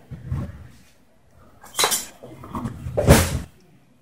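Metal spoon scraping and clinking against a stainless steel mixing bowl as it scoops through a crumbly rice-and-fish salad. There is a soft scuffle at the start, then two louder scrapes, the second and loudest about three seconds in.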